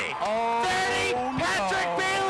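An excited man's voice stretching his call into long, drawn-out held notes, like a shouted count of yard lines as a runner breaks away. There are two held calls, with a short break about a second and a half in.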